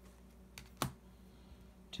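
Two short clicks of plastic card sleeves or top-loaders being handled, the second louder, just under a second in, over a faint steady hum.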